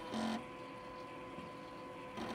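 Faint, steady electrical hum with a short brighter blip a fraction of a second in.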